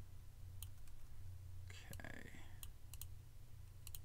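A handful of sharp computer mouse clicks: one a little after the start and a quick cluster near the end, as files are dragged and dropped. A steady low electrical hum runs underneath.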